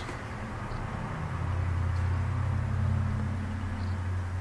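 A low, steady rumble that swells about a second in and eases slightly near the end.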